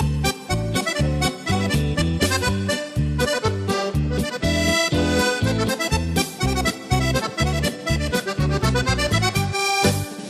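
Accordion playing a lively tune over a rhythm backing track, with a steady bass beat of about four pulses a second; a rising run of notes comes near the end.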